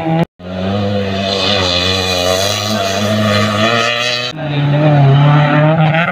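Car engine held at high revs as a sedan slides through the dirt on a mud-race track. The sound drops out briefly about a third of a second in, and the engine note changes abruptly just after four seconds.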